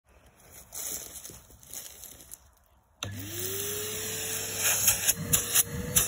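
Numatic Henry 200 vacuum cleaner switched on halfway through, its motor whining up in pitch within a second and then running steadily with a low hum. Before it starts there are faint scattered handling sounds, and sharp clicks join the motor near the end.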